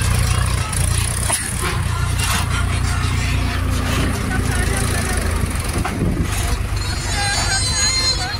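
Tractor diesel engine running steadily under load, pulling a trailer heaped with soil across soft field ground.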